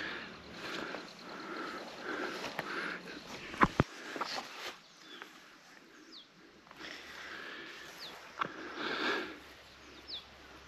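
Quiet outdoor ambience with a few short, high, falling bird chirps and a couple of sharp clicks.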